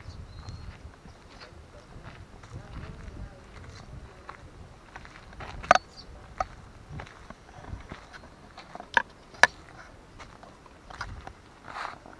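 Footsteps on a paved road over a low outdoor rumble, with irregular taps and a few sharp, louder knocks about halfway through and again near three-quarters of the way.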